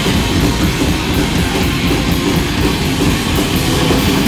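A rock band playing live at full volume: electric guitars and a drum kit pounding without a break.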